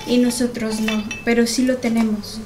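A woman talking, with light clinks of tableware as a metal flask is handled among glasses and cups on the table.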